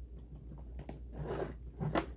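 Faint clicks and rubbing of small plastic toy parts being handled and fitted together, a little busier near the end.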